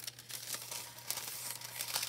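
A crumpled sheet of gold heat-transfer foil crinkling and crackling as it is unrolled and opened out by hand, with irregular small crackles throughout.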